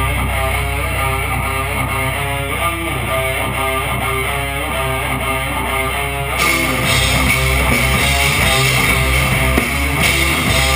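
Metal band rehearsing: electric guitar playing a repeating riff with drums. About six seconds in the sound thickens and gets louder.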